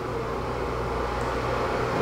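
MSR Pocket Rocket 2 canister stove burning steadily under a pot of water, a continuous rushing hiss of the gas flame, with a steady low hum underneath.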